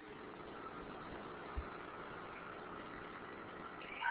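Faint, steady hiss of background noise with no distinct source, and a single brief low bump about one and a half seconds in.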